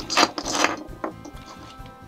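Plastic packaging and stiff plastic panels being handled: a burst of rustling and clicking in the first second, then quieter handling.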